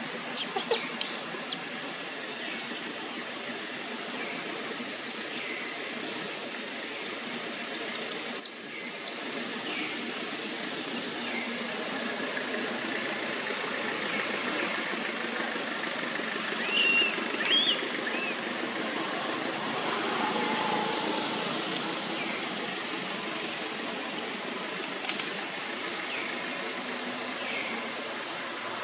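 Outdoor forest ambience: a steady background hiss broken by a few short, sharp, high-pitched chirps, a cluster about a second in, two more around eight to nine seconds in, and another pair near the end.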